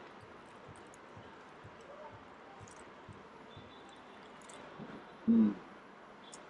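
Low room background with faint small clicks and rustles at a table where burgers are being eaten, then a short vocal sound from a man a little after five seconds in.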